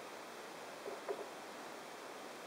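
Steady faint hiss of room tone, with a couple of soft rustles about a second in from fingers feeding dubbing fur into a thread dubbing loop.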